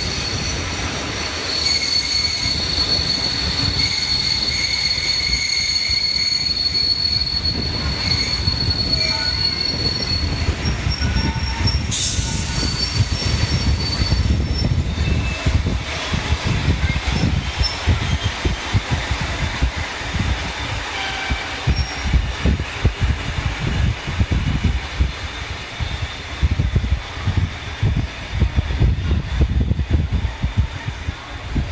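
Passenger train of heritage carriages rolling past on steel rails: a high, steady wheel squeal for about the first ten seconds over a low rumble, a sharp clank about twelve seconds in, then shorter squeals and uneven rhythmic thumps of wheels over the rail joints.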